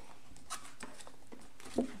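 A cardboard product box being handled: light taps and scrapes as its top flap is lifted open, with one sharper knock near the end.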